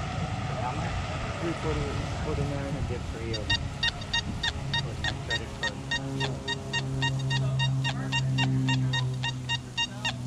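XP Deus metal detector with an X35 coil, in a deep full-tones program, sounding its target tones as the coil sweeps over a clad half dollar buried almost 11 inches deep. It starts a few seconds in as a fast, regular run of short high beeps. A steady low drone sits beneath them in the second half. The strong response comes after the machine was switched off and on again.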